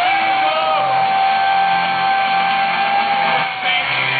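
Punk rock band playing live through a festival PA, recorded from inside the crowd, with one long held note over the band that falls slightly near the end.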